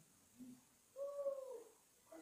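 A short, soft hum or "ooh" from a person's voice about a second in, one drawn-out note that dips slightly in pitch at the end; otherwise the room is nearly silent.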